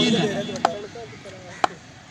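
Two sharp knocks about a second apart, over faint background voices.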